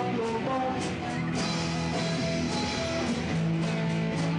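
Live punk rock band playing an instrumental passage: distorted electric guitar chords and bass over a steady drum beat with cymbal hits.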